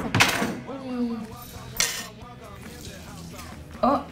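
A kitchen knife knocking on the tabletop as a lemon is cut in half: one sharp knock at the start and another a little under two seconds in.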